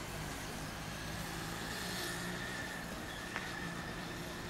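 A motor vehicle engine running steadily, a low hum under an even outdoor noise, with one short click a little after three seconds.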